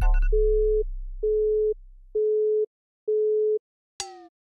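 Telephone busy tone: four steady beeps of one pitch, each about half a second long and about a second apart, following a brief falling chime.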